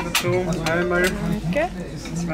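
Plates and cutlery clinking on a dining table, a few sharp clinks in the first second, under people's voices talking.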